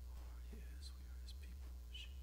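Faint whispering or softly murmured speech over a steady low hum.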